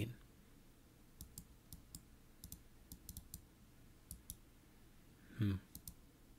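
Faint clicking of a computer mouse: about a dozen light, quick clicks, some in close pairs, over the first few seconds. A short vocal sound comes near the end.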